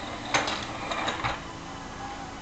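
Voice-activated 'Let's Go Thomas' toy engine responding to its command with a brief noisy hiss and clatter that starts about a third of a second in and fades over about a second.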